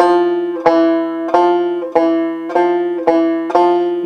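Five-string banjo in open G tuning, slowly picked: about seven evenly spaced plucked notes, roughly one every two-thirds of a second, with the strings ringing on under each other. The pinky frets the third fret of the low fourth string while the notes are picked.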